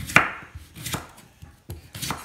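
A kitchen knife chopping a raw potato on a cutting board: three separate knife strikes, a little under a second apart.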